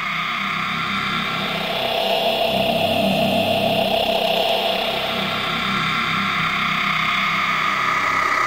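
Intro of an electronic dubstep track: a dense, noisy synthesizer drone that swells a little about two seconds in, over a choppy low bass pattern.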